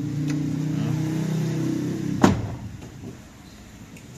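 A low, steady hum, then a single car door shutting with one sharp thump a little over two seconds in.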